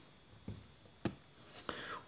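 A pause in a man's speech: faint breath and mouth noise with two short clicks, a small one about half a second in and a sharper one about a second in.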